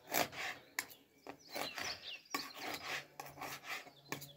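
A long kitchen knife sawing through a raw pike fillet onto a plastic cutting board, a run of short repeated slicing strokes.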